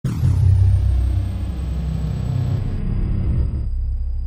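A cinematic intro rumble sound effect: it hits suddenly, then holds as a deep, steady rumble with a hissy top that thins out in the last second or so.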